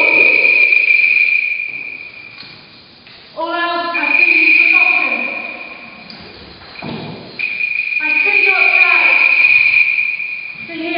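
Experimental music performance: a steady, high held tone that fades out about two seconds in and comes back twice, with pitched sounds rich in overtones that enter suddenly about three and a half seconds in and again near the eight-second mark.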